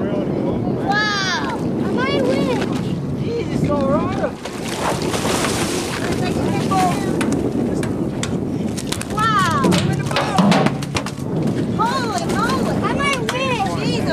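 A hooked cobia thrashing in the water at the boat's side while it is gaffed and brought aboard: a burst of splashing in the middle, followed by a run of sharp knocks. Excited voices shout over it several times.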